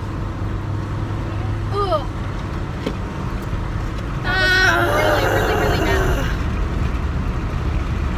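Steady car road and engine noise heard inside the cabin; about four seconds in, a woman lets out a drawn-out, wordless groan of disgust lasting a couple of seconds.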